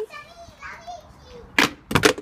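A child's voice, soft and drawn out, then a loud, brief clatter about one and a half seconds in and a second sharp knock at the end.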